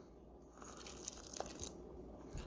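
Hot melted butter poured from a small steel bowl onto brown and white sugar in a stainless mixing bowl: a faint crackling patter that starts about half a second in.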